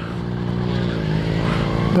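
Motorcycle engine running at a steady pitch as the bike leans through a turn, with wind rushing over the microphone.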